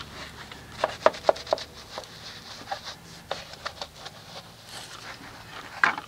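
Wool wheel brush (Wheel Woolies) scrubbing inside the barrel of a wet chrome wheel: soft rubbing broken by irregular light knocks as the brush's handle strikes the wheel, a quick run of them in the first two seconds and a sharper knock near the end.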